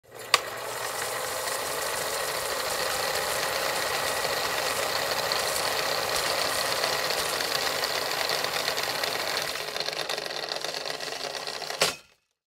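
Film projector clatter as an intro sound effect: a steady, rapid mechanical rattling, with a sharp click just after it starts. It cuts off suddenly at the end.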